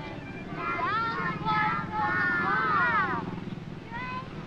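A group of young children's voices calling out and squealing together in several overlapping, rising-and-falling cries. The cries start about a second in and die away near the end, over a steady low hum.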